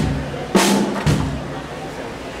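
Acoustic drum kit struck in a tuning check: a stick hit on a drum with a brief ringing tone about half a second in, and deep bass-drum thuds at the start and about a second in. The bass drum is tuned loose and low, the head tightened only until its wrinkles are gone.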